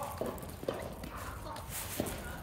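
Dachshunds' claws and paws clicking and pattering on paving stones as they trot along on their leashes, with a few sharper clicks.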